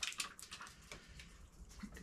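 A few faint, sharp clicks and light knocks, about five in two seconds, from hands working the metal bolts and fittings of a snowmobile chainsaw-holder bracket.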